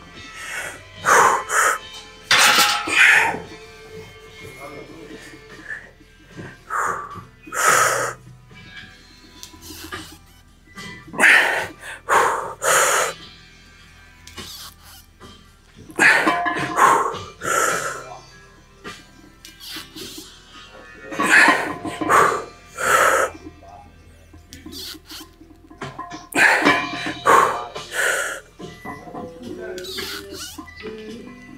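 A weightlifter's sharp, forceful breaths and exhalations under a heavy barbell back squat. They come in loud clusters about every four to five seconds, one cluster for each rep, over faint background music.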